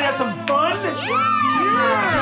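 Children shouting an excited, drawn-out "yay!" in reply to a man's "ready to have fun?", over guitar background music.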